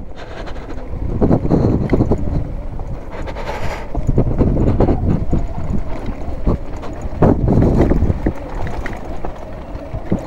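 Zero FX electric dirt bike ridden slowly over a bumpy, rocky gravel road: wind noise on the microphone over a steady low rumble of the tyres, with irregular knocks and jolts as the bike goes over stones.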